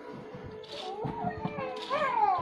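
A child's voice making wordless sounds, with a high call near the end that rises and falls in pitch, over a faint steady tone.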